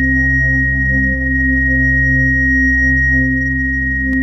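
Electronic drone music: a steady, high-pitched pure sine tone held over layered low sustained synthesizer tones, with the lower tones shifting about a second in.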